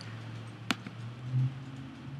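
A single computer mouse click about two-thirds of a second in, over a low steady hum, with a brief low sound a little later.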